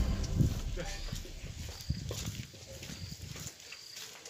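Indistinct voices with scattered short knocks and thuds, growing quieter toward the end.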